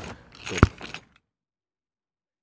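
A single sharp click or knock about half a second in, with a brief rattle around it, then the sound cuts out to complete silence.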